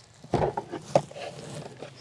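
A few knocks and bumps in the first half as a removable trailer galley wall panel is lifted clear and handled.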